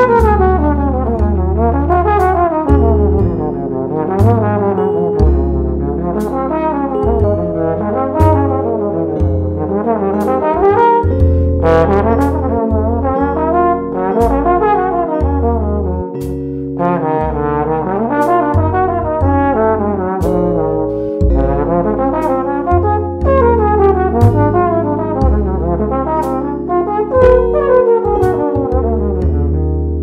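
Trombone playing a jazz line in tempo, outlining each chord with a quick arpeggio rising and a scale falling, over and over without a break.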